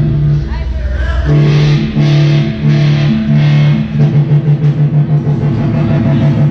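Live rock band playing loudly: electric guitar, bass guitar and drums, with held low notes that change about a second in and a faster pulsing rhythm in the second half.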